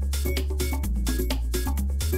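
House music played from a vinyl record on a turntable: a steady beat of about four hits a second with busy pitched percussion over a sustained bass line that shifts note just under once a second.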